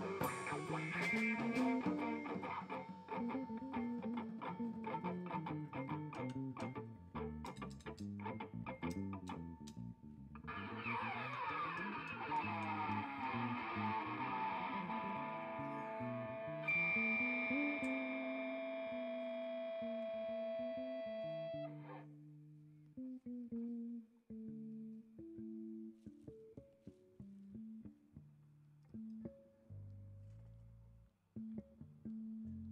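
Electric bass guitar solo with live band backing. The first ten seconds are busy, with many sharp hits. A held, ringing chord then sounds until about twenty-two seconds in, and after that the bass plays sparse single notes alone, more quietly.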